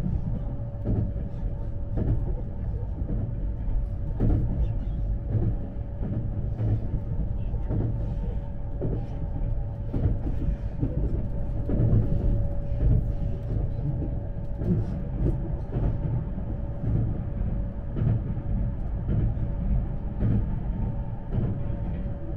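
Cabin noise of a Series E257 electric limited express train running at speed: a steady low rumble of wheels on rail, irregular clicks and knocks from the track, and a steady hum held throughout.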